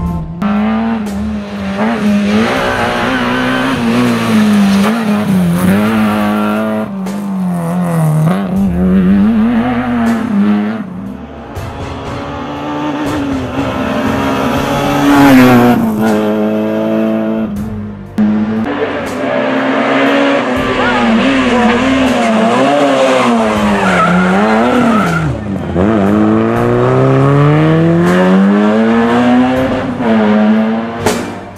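Peugeot 405 Mi16 rally car's four-cylinder engine at full throttle on a special stage, revving up and dropping back again and again through the gear changes, with a long rising pull near the end.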